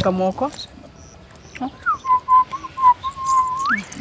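One long whistled note, held steady for about two seconds with a slight wobble and sliding up in pitch at the end. A few words of speech come just before it.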